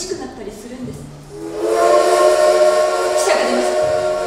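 A loud, sustained chord of several steady tones, whistle-like, swells in about a second and a half in and holds without changing pitch.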